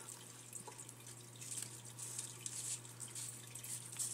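Quiet room noise: a steady low hum with faint scattered ticks and rustles.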